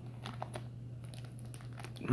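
Clear plastic wrapping crinkling faintly, with a few light crackles, as it is handled around a cast silver piece.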